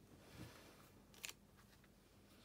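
Near silence with faint handling of a clear acrylic stamp block on cardstock as it is pressed down and lifted off the paper: a soft rub about half a second in, then a light double click a little past the middle.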